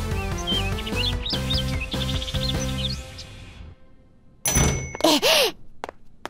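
Light cartoon music with bird-like chirps fades out about three and a half seconds in. A second later a door opens with a loud thunk, followed by a few short sharp clicks.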